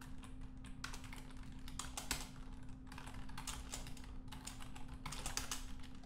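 Typing on a computer keyboard: a run of quick, irregular keystrokes, with a steady low hum underneath.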